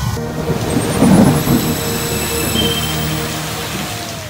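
Thunderstorm sound effect: steady rain with a rumble of thunder about a second in, over sustained tones.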